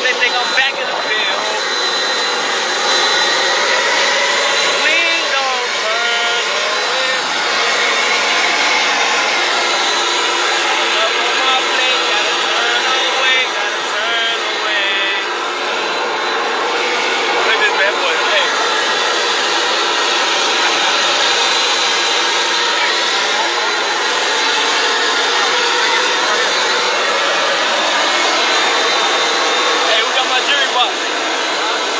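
Steady rush of wind on a phone's microphone, with a man's voice faintly heard beneath it.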